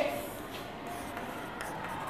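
Chalk writing on a chalkboard: faint scratches and taps.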